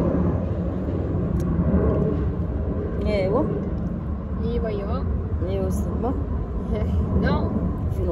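A steady low outdoor rumble, like distant road traffic, runs throughout. From about three seconds in, short voice sounds slide up and down in pitch over it.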